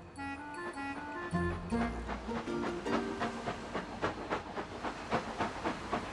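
A short music cue, then a cartoon steam locomotive coming in: rhythmic chuffs of steam, about three a second, starting about two and a half seconds in and growing louder.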